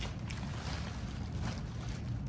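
Thin plastic bag crinkling in short bursts as chicken is handled through it, over a steady low hum.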